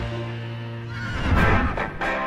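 Instrumental backing music with held chords. About a second in, a horse whinny sound effect, wavering and falling in pitch, rises over the music.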